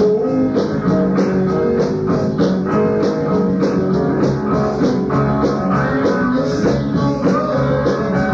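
Live rock band playing an instrumental passage: electric guitars over bass, drums and keyboards, with a steady beat, heard through an audience recording of the concert.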